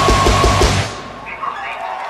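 Hardcore band playing live through a festival PA, loud, with rapid kick-drum beats, cutting off abruptly about a second in. Shouts and crowd noise follow.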